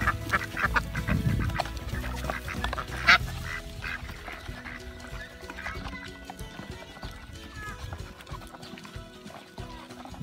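Background music over a flock of ducks feeding at a wooden tray of pellets. Their bills click and clatter in the feed, thickest in the first few seconds, with one sharp click about three seconds in, and it thins out after that.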